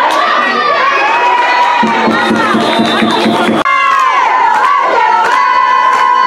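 Crowd of voices shouting and cheering loudly at a football game, high-pitched yells overlapping. There is an abrupt break in the sound about three and a half seconds in.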